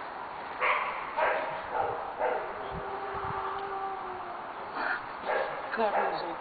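A dog vocalizing in several short bursts, with one drawn-out whine in the middle, while it grips a training tug.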